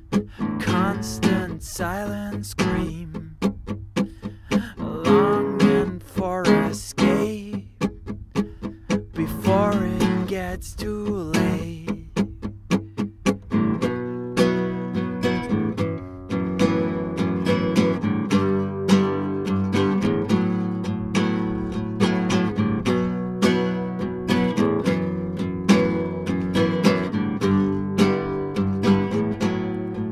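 Solo acoustic guitar playing an instrumental passage: separate picked notes and short phrases with small gaps at first, then a fuller, steady chord pattern from about halfway through.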